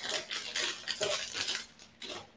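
Small craft supplies being handled and set down on a tabletop: a run of light, irregular clicks and rustles that tails off near the end.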